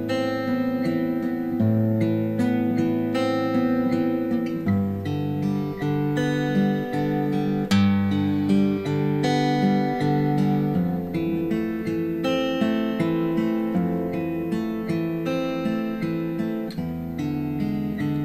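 Steel-string acoustic guitar fingerpicked in a steady arpeggio pattern (thumb, index, middle, index, then ring, middle, index, middle), moving through a slow, sad-sounding minor progression of A minor 9, G and E7 chords. The chord changes every few seconds.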